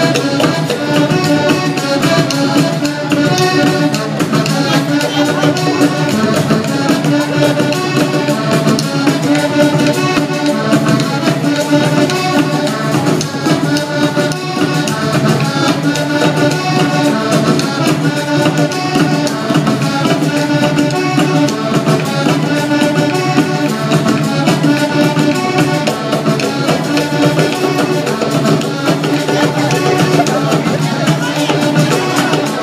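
Live Panamanian folk band playing a dance tune, the accordion leading over violin and a steady percussion beat.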